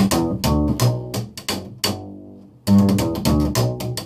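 Upright bass played slap style: plucked low notes in G mixed with sharp percussive slaps and snaps of the strings against the fingerboard, making a short descending ending lick. The lick is played twice, with a short pause about two seconds in.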